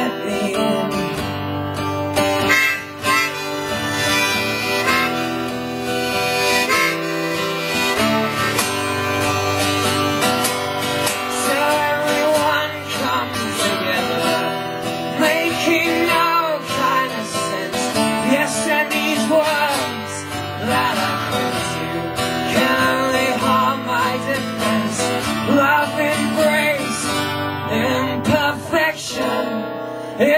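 Harmonica played in a neck rack over steadily strummed acoustic guitar, an instrumental harmonica break with no singing.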